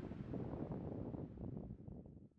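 Wind buffeting the microphone: a faint, uneven low rumble with a light hiss, easing off near the end.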